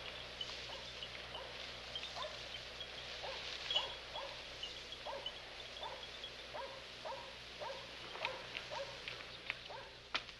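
A dog barking repeatedly and faintly, about two short barks a second, over a soft outdoor background with faint high chirps.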